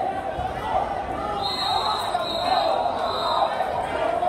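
Indistinct voices of spectators and coaches echoing in a large gym, with a steady high tone heard for about two seconds in the middle.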